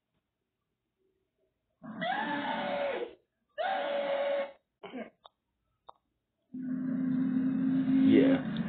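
A man's loud, shrieking laughter played back from a TV: two long, high-pitched bursts about two and four seconds in, with short snatches after them. A steady droning tone comes in near the end.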